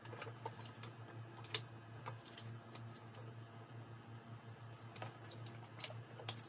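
Faint, irregular small clicks and taps of things being handled close by, over a steady low hum.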